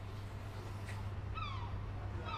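An animal calling once, a short falling cry about one and a half seconds in, over a faint steady low hum.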